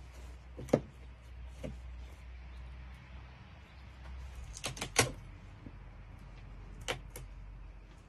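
Scattered light knocks and clicks of a plastic wall panel being handled and pressed into its edge trim, the sharpest knock about five seconds in, over a low steady hum.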